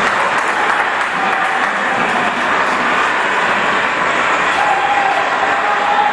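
Audience applauding steadily, with some voices mixed in.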